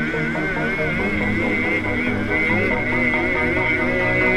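Background music: a wavering high melody over steady, held lower notes.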